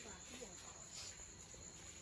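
Faint, steady chirring of crickets, with a voice murmuring briefly near the start.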